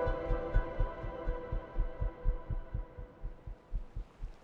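Recorded human heartbeat: a quick run of low thuds, gradually fading, under a held musical chord that dies away.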